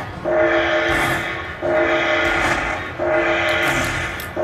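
Slot machine's bonus-tally sound: a sustained horn-like chord repeated three times, each fading over about a second before the next, as each prize orb is added to the win meter.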